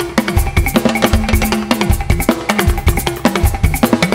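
Live juju band playing an instrumental passage: a busy drum-kit and talking-drum groove with many quick strokes over a held bass line, without vocals.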